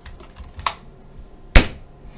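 Computer keyboard keystrokes while a control name is typed: a few light, scattered key taps and one sharp, loud key press about one and a half seconds in.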